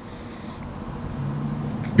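A steady low hum over background noise, getting a little louder in the second half.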